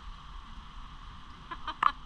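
Steady wind noise on an open ship's deck, then several sharp clicks in quick succession near the end: a lighter being struck in the wind.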